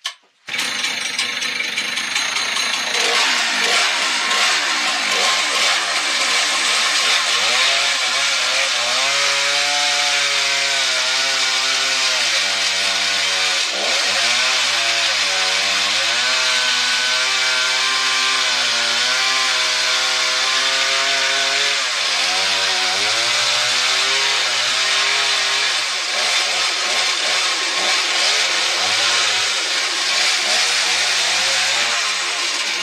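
Husqvarna chainsaw running under load as it cuts into a log on a dull chain, its engine pitch sagging and recovering several times as the bar bites into the wood.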